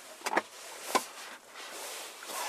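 Two short sharp clicks, about two-thirds of a second apart, over a faint hiss.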